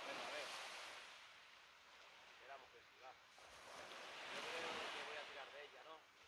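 Faint sea surf washing on the shore, two slow swells of hiss rising and falling, with faint distant voices.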